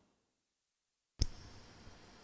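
Sound drops to dead silence, then a single sharp click a little over a second in as faint steady room hiss comes back: a cut-in click in the live audio feed.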